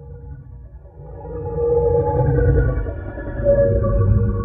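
Intro sound design for an animated title: a low rumble under long held tones, swelling in two waves.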